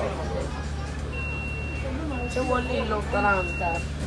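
Electronic warning beeper in a bus or tram sounding three steady high beeps, each under a second long with short gaps, starting about a second in, over the vehicle's steady low hum.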